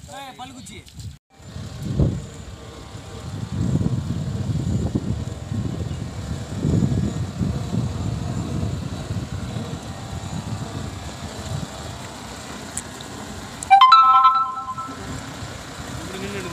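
HMT tractor's diesel engine running as it approaches, a low uneven rumble. A brief horn blast of several tones sounds about two seconds before the end and is the loudest sound.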